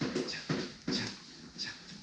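Short, irregular vocal sounds without words, a few in quick succession.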